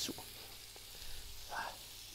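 Diced bacon and cubes of white bread frying in hot oil in a pan, giving a steady, gentle sizzle.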